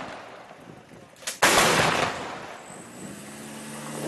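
A truck-mounted heavy gun firing a single shot about one and a half seconds in: a sharp click, then a very loud blast with a long echoing tail. Near the end a vehicle engine starts to be heard running, its pitch rising.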